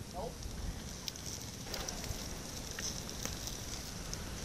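Wood campfire burning, crackling with a few scattered sharp pops over a steady hiss.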